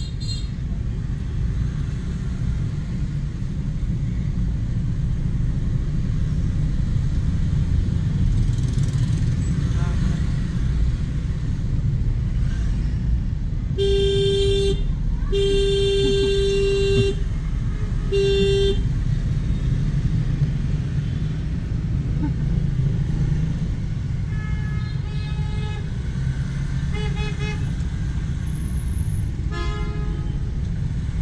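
Steady low road and engine rumble inside a car's cabin in heavy city traffic. About halfway through, a loud car horn honks three times: short, long, short. A few fainter horns from other vehicles follow later.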